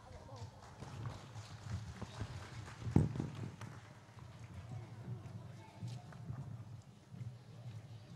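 Indistinct voices and the shuffle of feet on a stage, with one loud thump about three seconds in.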